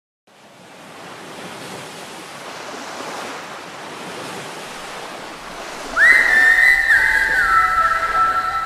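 A soft hiss like surf fades in from silence and slowly builds. About six seconds in, a loud, high whistling tone cuts in and steps down in pitch twice.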